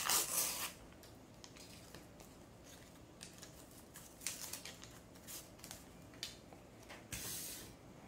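Paper wrapper of an adhesive strip bandage being peeled open and pulled off by hand: a short rustle at the start, faint crinkles of paper through the middle, and another short peeling rustle near the end.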